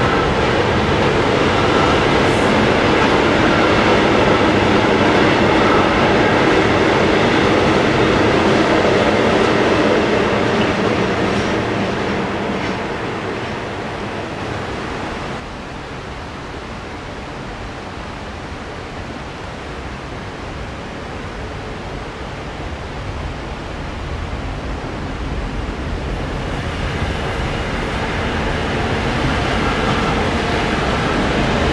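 A freight train rolling past, its steady rumble of wheels on rails fading away over the first half. It drops off abruptly at about the midpoint. Another electric train then approaches and grows steadily louder until its locomotive arrives near the end.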